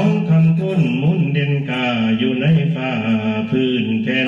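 Lao khaen, a bamboo free-reed mouth organ, plays a steady drone chord under a man's wordless, gliding mor lam vocal line.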